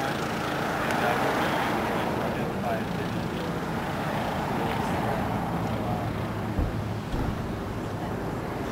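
Indistinct, murmured voices over a steady low hum and background noise.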